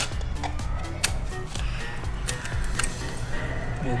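Background music, with scattered short clicks over it.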